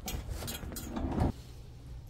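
A glass entrance door pulled open, with a couple of sharp clicks from the handle and latch over low outdoor background noise. A little over a second in, the noise cuts off and gives way to the steady low hum of a quiet indoor room.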